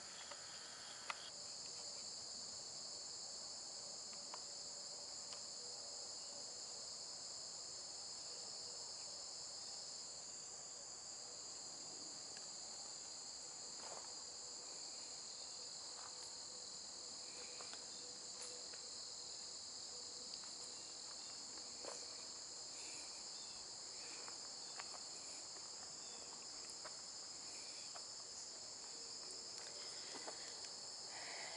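A faint, steady, high-pitched chorus of insects, unbroken throughout, with a few soft ticks scattered through it.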